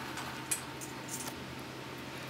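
Small handling sounds on the telescope: a single sharp click about half a second in, then a few faint light scrapes and clinks.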